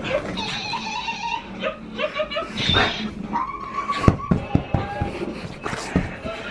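A pug whining in drawn-out, high wavering tones, with a few sharp taps about four seconds in.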